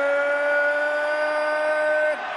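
Boxing ring announcer's voice holding the last syllable of the champion's name as one long drawn-out note, rising slightly in pitch.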